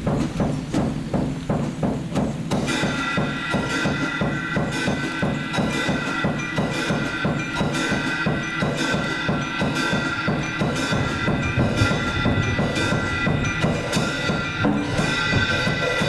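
Solo drum kit played with sticks in fast, even strokes. About two and a half seconds in, a steady metallic ringing of several high tones joins and holds through the playing.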